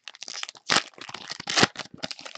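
Foil trading-card pack wrappers crinkling and tearing as they are ripped open by hand, with two louder rips about three-quarters of a second and a second and a half in.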